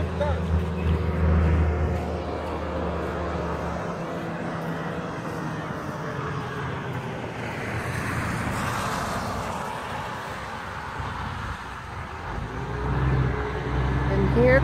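Highway traffic: tyre and road noise from passing vehicles, swelling as a car goes by about eight or nine seconds in. Near the end, the low engine drone of an approaching tractor-trailer grows louder.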